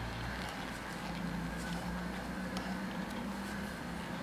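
Steady low background rumble, with faint, irregular light clicks from metal knitting needles working stitches during a bind-off.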